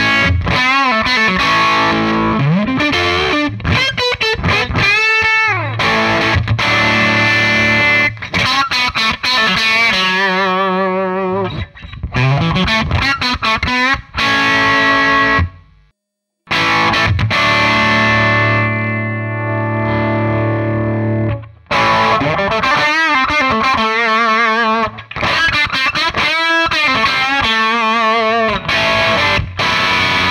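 Electric guitar, a Harley Benton Fusion II, played through a Danelectro Billionaire Pride of Texas overdrive pedal set with its volume at maximum and its gain at minimum, so the pedal drives the amp into overdrive. The phrases have many string bends and vibrato, with one short break about halfway through.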